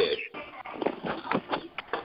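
Faint, indistinct background voices and short clicks coming over an open telephone conference line.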